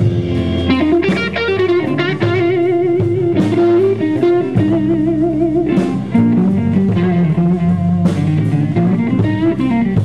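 Live rock band playing an instrumental passage with no singing: electric guitar lead with wavering, bent notes over electric bass and drum kit.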